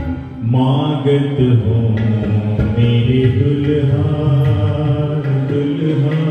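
A man singing a Hindi devotional bhajan in long held phrases, accompanied by harmonium and electronic keyboard; a new sung line comes in about half a second in after a brief dip.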